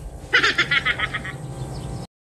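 A short, rapid chirping trill of about nine or ten pulses in under a second, fading out, over a faint low hum.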